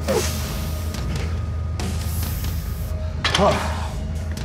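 Background music with a steady low bass line, with heavy breathing and a brief strained vocal call about three and a half seconds in.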